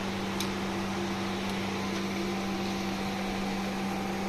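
Steady low machine hum with a constant hiss, like an electric fan or motor running, with a faint click about half a second in.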